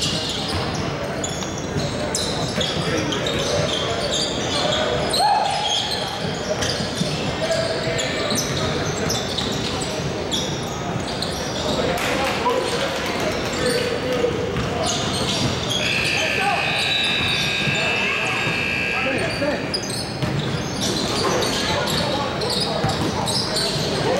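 Basketball bouncing on a hardwood gym court during a game, with many short sharp knocks and players' voices. In the middle comes a steady high tone lasting about three seconds.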